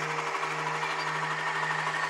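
Suzuki GSX-R125's single-cylinder four-stroke engine idling steadily in neutral, with a constant low hum.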